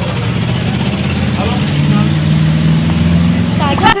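Steady noise of a motor vehicle engine running, with indistinct voices in the background.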